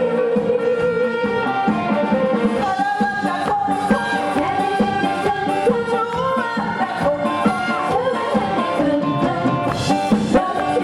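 A woman singing a Korean popular song into a microphone, backed by a live band, with a cymbal crash near the end.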